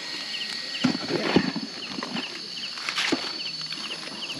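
Night insects calling: a short, regular chirp about twice a second over a steady high drone. A few clicks and knocks from handling at the charcoal grill come through, most of them about a second in.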